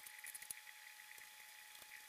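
Near silence: room tone with a faint steady hum, and a couple of faint ticks in the first half second.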